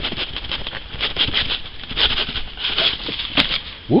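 A cardboard box being handled and opened by hand: irregular rustling and scraping with many small clicks, and one sharp click about three and a half seconds in.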